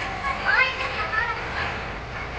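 Crowd of children's voices chattering and calling out, with a couple of higher-pitched shouts standing out about half a second and a second in.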